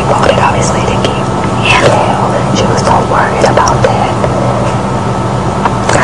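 Two women's conversation, low and indistinct, over a steady low hum.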